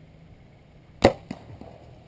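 A compound bow being shot: one sharp, loud crack of the string's release, followed about a quarter second later by a smaller knock.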